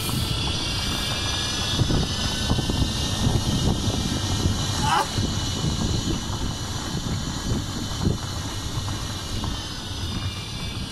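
Electric cart driving along a paved path: steady tyre rumble and wind buffeting the microphone, with a faint high whine from the electric drive.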